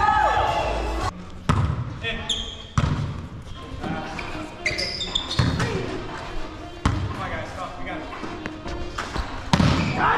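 Volleyball rally in a gym: about six sharp hits of the ball, a second or more apart, ringing in the large hall. Brief high squeaks of sneakers on the hardwood floor come in between.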